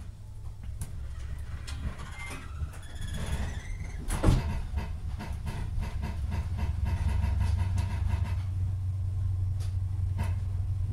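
Interior sound of an HST coach as the train pulls away from a station: the Class 43 power cars' diesel engines drone low and grow louder from about three seconds in as the train gathers speed. Light clicks run through it, with one sharp knock about four seconds in.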